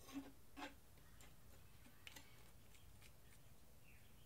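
Near silence with a few faint clicks and taps as a painted canvas is handled and tilted by gloved hands, two slightly louder ones in the first second.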